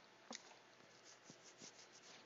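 Near silence, with a few faint light taps and soft rubbing of a pen stylus on a graphics tablet.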